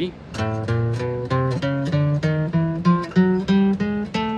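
Acoustic guitar playing an ascending chromatic scale, single notes plucked one after another. About thirteen notes climb in small even steps through one octave, A up to A, at roughly three to four notes a second.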